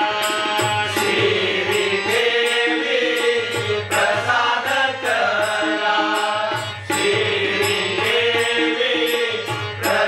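Men singing a Marathi devotional bhajan, accompanied by harmonium, tabla and jhanj (small hand cymbals) struck in a steady rhythm about three times a second.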